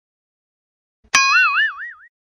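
A cartoon 'boing' sound effect: a sharp twang about a second in whose pitch wobbles up and down about four times a second as it fades out within a second.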